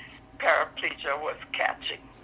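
Only speech: a woman talking in a recorded interview, her voice thin and phone-like, with nothing above the middle of the range.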